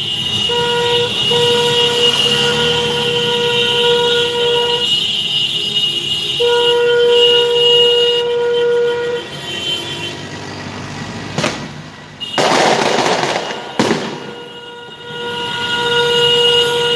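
A car horn held in long, steady blasts: one of about four seconds, then after a short gap another of about three seconds, with a fainter one near the end. Around twelve seconds in, a burst of noise lasts over a second.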